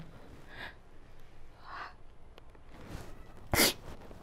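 A woman crying without words: faint sniffles and breaths, then one loud, sharp sniff about three and a half seconds in.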